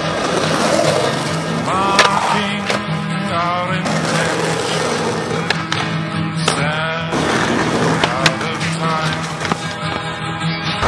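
Skateboard wheels rolling on rough pavement, with several sharp clacks of the board, over a backing music track.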